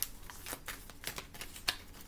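A tarot deck being handled: an irregular run of quick, sharp card clicks and flicks, the loudest near the end.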